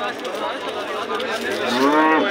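Cattle mooing: one call that rises and then falls, starting near the end and loudest there, over a background of crowd talk.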